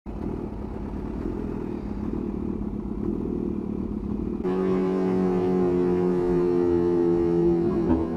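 Kawasaki Ninja H2 supercharged inline-four motorcycle engine running in traffic, a low rumble. About four seconds in it cuts abruptly to steady, held low notes of background music.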